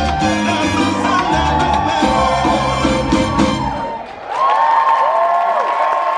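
Salsa music that stops about four seconds in, followed by an audience cheering and applauding.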